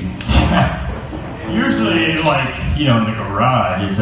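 A man talking on stage between songs, with a low thump just after the start and another near three seconds in.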